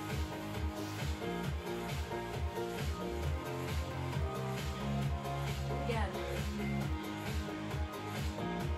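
Background workout music with a steady, regular bass beat under sustained pitched notes.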